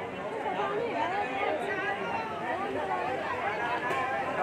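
Crowd chatter: many people talking at once in a packed, busy street, a steady mix of overlapping voices.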